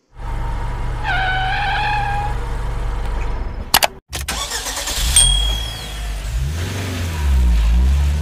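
Intro sound effect of a car engine starting and running with a steady low rumble and a brief rising whine. Two sharp clicks and a short cut-out come just before the middle. Then the engine sound returns with a falling whistle and swells louder near the end.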